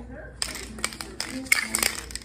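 Aerosol spray paint can spraying in short hissing spurts, with sharp clicks among them.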